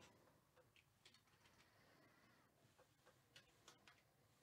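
Near silence, with a few faint, scattered ticks from a trading card being handled.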